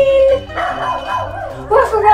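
Dog-like howl held for about half a second, then a run of yips and barks with a rising yelp near the end.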